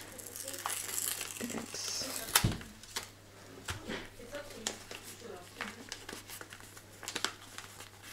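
Crinkling of a small yellow mailing envelope handled and worked open by hand, loudest in the first two seconds, then scattered rustles and small clicks. A single sharp knock about two and a half seconds in, over a steady low hum.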